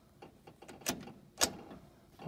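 A few light clicks and knocks, the two loudest about a second and a second and a half in.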